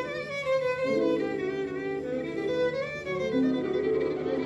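Solo violin playing a sustained melody with vibrato and pitch slides, over a cimbalom accompaniment of lower held notes.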